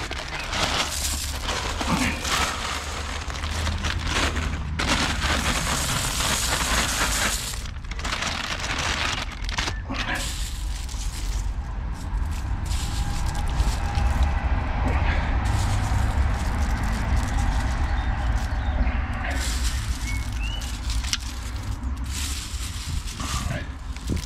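Rustling and crackling of sunflower seeds being shaken from a plastic seed bag and scattered onto garden soil, with hand rustling in the bed. A steady low rumble runs underneath.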